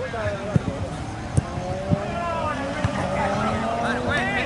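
Players shouting across a football pitch, with a few sharp knocks in the first two seconds. Over the second half a motor vehicle is heard passing nearby, its engine note slowly rising.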